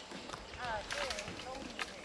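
Brief voices calling out, with a few sharp knocks, the clearest near the end.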